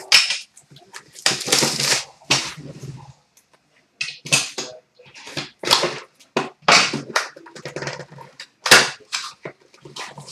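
Plastic shrink-wrap being slit and torn off a sealed trading-card box, then the cardboard box being slid open and handled: a string of short crinkling rips and scrapes, about one a second.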